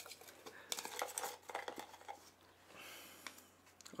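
Faint rustling and a few light clicks of a folded paper slip being handled and unfolded.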